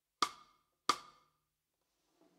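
Two cross-stick clicks on a snare drum, about two-thirds of a second apart, each with a short woody ring: the stick lies across the snare head, held at its usual spot, and clicks off the rim.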